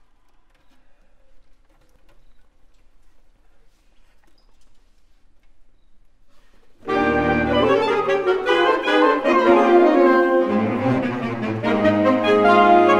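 Faint stage and hall sounds for about seven seconds, then a large saxophone ensemble of soprano, alto, tenor and baritone saxophones comes in suddenly and loudly with full sustained chords.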